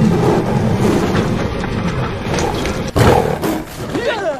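Sound-designed growling and roaring of a pack of tigers, with a sudden loud hit about three seconds in.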